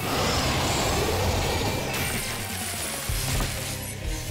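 Dramatic cartoon action score mixed with sound effects: a loud rushing, crackling noise bursts in suddenly at the start and carries on over a low rumble.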